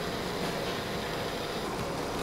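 Steady, even hiss of operating-room background noise from ventilation and running equipment, with no distinct events.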